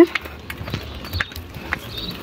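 Footsteps on a cobblestone street: a series of light, irregular clicks, a few each second.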